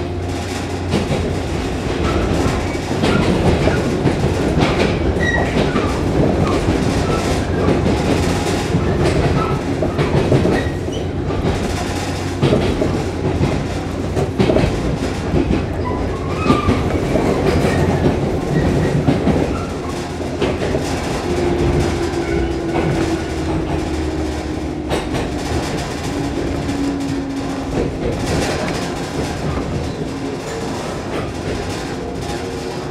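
A 115-series electric train heard from inside the passenger car, running with its wheels clattering over the rail joints. In the last third a whine falls steadily in pitch and the running noise eases as the train slows into the station.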